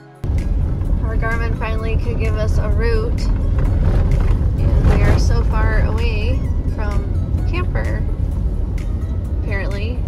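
Pickup truck driving on a rough dirt road, heard from inside the cab: a loud, steady rumble of tyres, road and wind that starts suddenly just after the start. A voice with a wavering pitch, like singing, runs over it.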